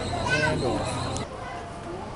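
A high-pitched voice, like a child calling out, about half a second in, over a steady hum; the hum cuts off suddenly with a click just past a second in, leaving faint background voices.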